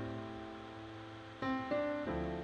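Soft instrumental background music: held notes that slowly fade, with new notes struck about a second and a half in.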